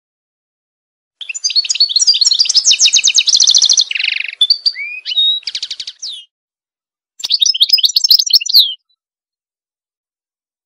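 A songbird singing two long, varied phrases of rapid trills and chirps: the first starts about a second in and runs about five seconds, and a shorter second phrase comes after a brief pause.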